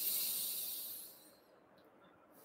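A breath blown out through pursed lips, a hiss lasting about a second that fades away: a dandelion-breath exhale, as if blowing the seeds off a dandelion.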